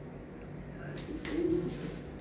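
A dove cooing once, a short low call a little over a second in.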